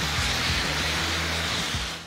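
Two bike-mounted CO2 fire extinguishers discharging as jet thrust: a steady, loud rushing hiss that drops away right at the end. Background music with a low bass line plays under it.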